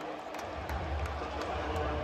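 Football stadium crowd noise, a steady murmur of many people, with a low rumble that comes in about half a second in.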